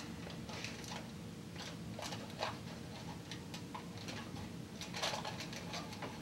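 Heavy-duty aluminium foil crinkling and scraping in short, scattered bursts as its edge is pressed and tucked into the slot of a tinfoil phonograph's mandrel with a flat tool.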